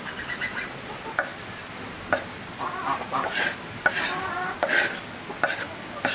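A steel knife knocks and scrapes on a wooden chopping board as chopped green herbs are pushed off it into a bowl: about six separate knocks and a few scrapes. Farm fowl make short calls in the background.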